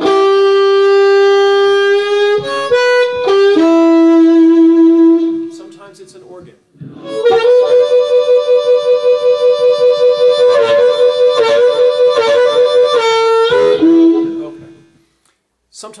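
Blues harmonica played as a tenor-sax imitation: long, held notes, a step down in pitch about three seconds in, a short pause, then a long note pulsing quickly for several seconds before dropping to a lower note that fades away.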